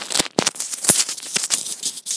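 Handling noise on a clip-on iPhone headset microphone: fingers and shirt fabric rubbing and knocking against the mic, a dense run of loud scratchy crackles and sharp clicks.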